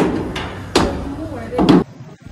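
Footsteps on steep metal stairs with diamond-plate steel treads: three heavy steps a little under a second apart, each a sharp knock.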